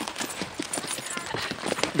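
Horses' hooves clopping on a dry dirt-and-stone trail, an uneven run of several hoofbeats a second from more than one horse walking.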